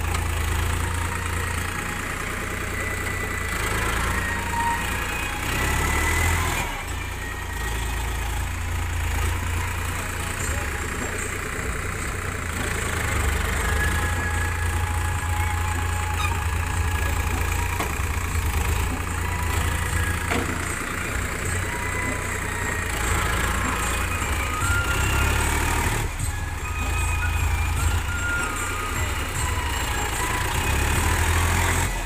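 Tractor engine running steadily, with indistinct voices in the background.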